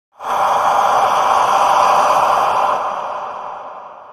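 Whoosh sound effect for an animated logo intro: a breathy rush of noise that swells in at once, holds, then slowly fades away over the last couple of seconds.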